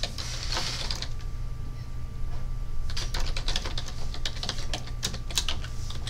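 Irregular light clicks and taps, in quick runs about three seconds in and again about five seconds in, with a brief rustle near the start, over a steady low hum.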